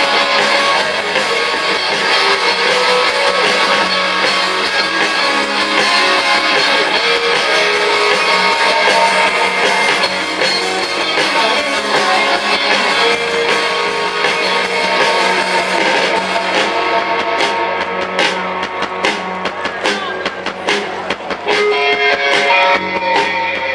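A live rock band playing an instrumental passage on electric guitars, bass and drum kit, amplified through PA speakers. In the last few seconds the sustained guitar sound thins and the drum hits stand out.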